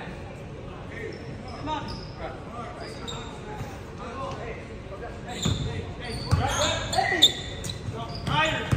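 Basketball bouncing on a hardwood gym floor, with a few sharp thuds and short high squeaks from about five and a half seconds in, over a steady murmur of player and spectator voices in a large echoing gym.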